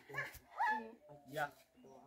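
Faint voices in the background: three short vocal sounds, one rising in pitch about halfway through.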